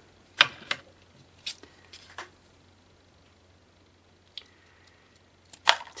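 A few sharp clicks and taps as a pen and scissors are set down and picked up on a cutting mat, then a short snip of scissors cutting a thin strip of card stock near the end.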